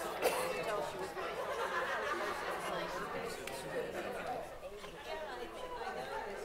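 Audience chatter in a large hall: many voices talking at once, none of them clear. A single short knock comes just after the start.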